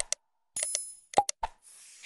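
Sound effects for an animated subscribe-button graphic: a quick double mouse click, a short high bell ding about half a second in, a few more clicks, then a faint hissing glitch sound near the end.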